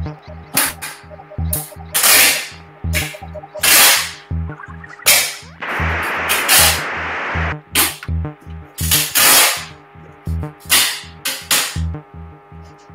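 Improvised electronic music: a low pulsing beat about twice a second, cut through by short, sharp hissing noise bursts, with a longer swell of noise and a rising sweep about six seconds in.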